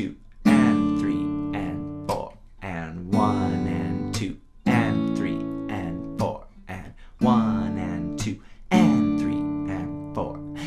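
Steel-string acoustic guitar playing a D, D/F♯, G, A chord progression. Each chord is struck and left to ring, with the chord changes coming in pairs about a second and a half apart.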